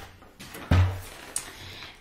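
A dull thump as a long cardboard kit box is handled on a stone countertop, about two thirds of a second in, fading over half a second, followed by a light click.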